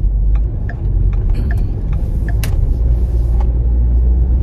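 Road and engine noise inside a moving car's cabin: a steady low rumble, with a single sharp click about two and a half seconds in.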